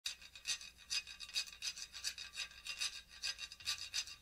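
Samba hand percussion playing a quiet rhythmic pattern on its own: short scratchy strokes, about two strong ones a second with lighter ones in between.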